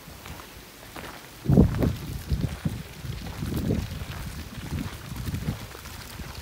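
Footsteps on a dirt path: a run of irregular low thuds, the loudest about one and a half seconds in.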